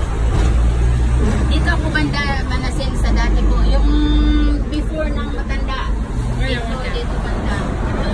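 Hong Kong double-decker tram running, a steady low rumble from the car, with passengers' voices over it.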